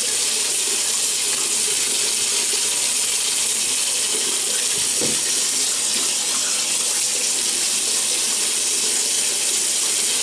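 Bathroom tap running steadily into a sink while water is worked into a bearded face to soften the stubble before shaving.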